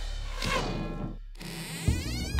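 Buzzing electronic transition sound effect. Near the end it jumps into a quick rising sweep.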